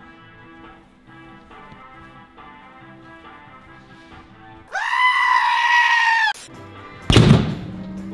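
Background music, then a screaming-sheep meme sound effect cuts in: one long, loud bleat about five seconds in. Near the end comes a single hard thump of a punch landing on an arcade boxing machine's bag.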